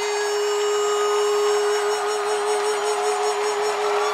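A singer holding one long, steady note with a slight vibrato over a rushing background noise; the note breaks off right at the end.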